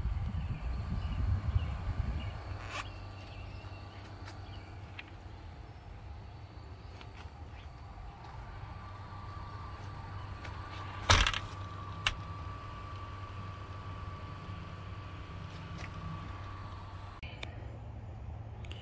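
Small solar-powered exhaust fan running: a steady low hum with a faint, thin higher whine above it. There is some low rumble in the first two seconds and a single sharp knock about eleven seconds in.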